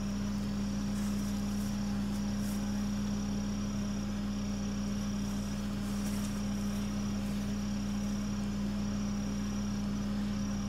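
Insects trilling in a high, thin, continuous tone that breaks off briefly a few times, over a steady low hum.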